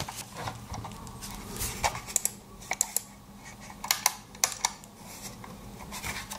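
Logitech M705 Marathon wireless mouse being handled, giving a string of small, sharp plastic clicks and taps at irregular intervals, some in quick pairs.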